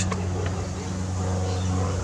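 A steady low mechanical hum, like an engine running at a constant speed, with no distinct clicks or knocks standing out.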